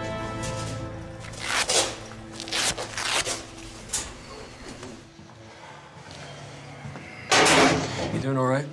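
Film score fading out, then rustling and knocking of clothing and tactical vests being pulled off and hung in metal lockers, in several short bursts with the loudest near the end.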